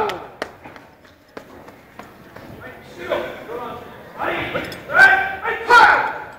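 Loud shouts during a karate kumite bout, several short yells in the second half, with a few sharp knocks before them, ringing in a large hall.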